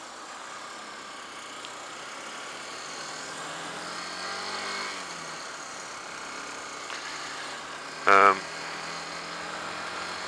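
Honda CBF125's small single-cylinder four-stroke engine pulling along under a steady rush of wind noise; its pitch rises slowly for about five seconds, dips, then holds steady. A short loud vocal sound from the rider cuts in about eight seconds in.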